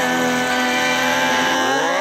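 Rock song instrumental break: a held, distorted electric-guitar tone with no drums, then a sweep rising in pitch over the last half second.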